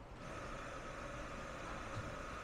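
Steady faint mechanical hum with a thin whine that sets in just after the start, over low room noise.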